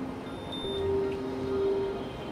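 Soft background music with long held notes that change pitch slowly.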